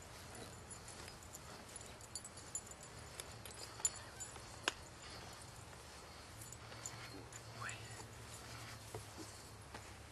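Faint scattered clicks and knocks from horses and their harness, over a low steady hum.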